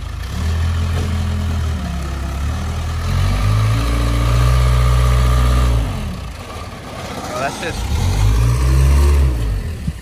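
Heavy machine's engine revving in two long surges, the first about three seconds in and the second near the end, its pitch climbing and then falling each time, with a lower running note between them.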